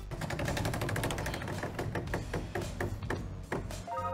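Game-show prize wheel spinning, its pegs clicking against the pointer in a rapid run of ticks that slows steadily as the wheel comes to rest.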